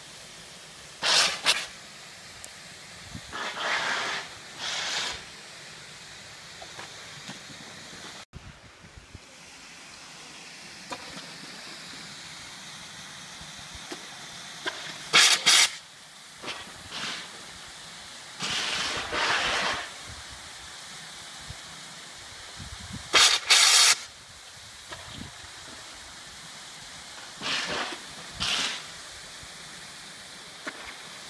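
Water jets in a memorial's invasion pool spurting in short hissing bursts every few seconds, some brief and doubled, some about a second long. The jets simulate gunfire striking the water. Under them runs steady background noise.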